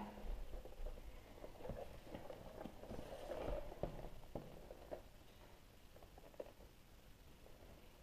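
Faint rustling and light taps of a cardboard toy box with a clear plastic window being handled and turned over in the hands, dying away to almost nothing in the last few seconds.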